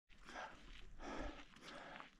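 Faint footsteps on a stony gravel trail, a few soft steps at an even walking pace over low outdoor background noise.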